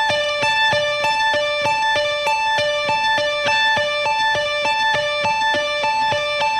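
Electric guitar played with inside picking: two notes, D at the 15th fret of the B string and A at the 17th fret of the high E string, picked alternately up, down, up, down and repeated in a slow, even rhythm.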